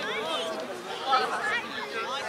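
Overlapping chatter of young children and adults, several voices talking and calling at once with no single clear speaker.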